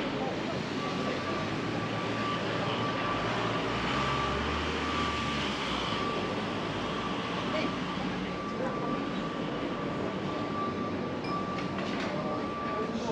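City street ambience: passers-by talking and a low traffic rumble that swells briefly partway through, with a thin steady high tone running beneath from about a second in.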